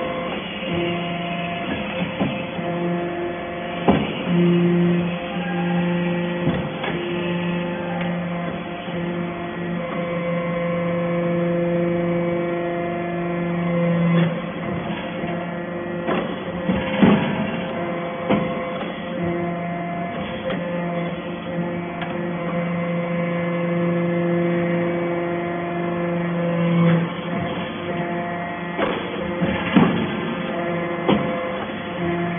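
Hydraulic metal-chip briquetting press running in cycles. A steady hum from its hydraulic power unit deepens into a stronger tone for about ten seconds at a time, twice, and sharp knocks and clanks come every several seconds as briquettes are pressed and pushed out along the chute.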